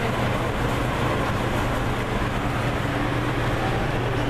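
Steady low hum with an even hiss over it, unchanging and with no distinct events.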